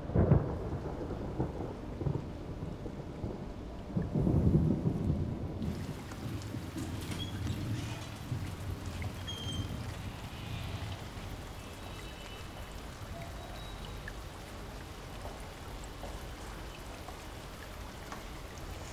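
Thunder rumbling through heavy rain: one roll at the start and a louder one about four seconds in, after which the thunder fades and steady rain patter carries on.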